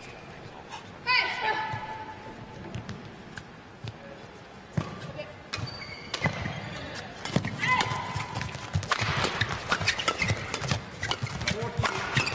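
A score is called near the start. About five seconds in, a fast men's doubles badminton rally begins: sharp racket strikes on the shuttlecock come quicker and quicker toward the end, mixed with shoe squeaks and footfalls on the court mat.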